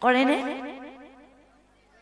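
A woman laughing into a handheld microphone: a quick run of laughs, each rising in pitch, that starts loud and fades away over about a second and a half.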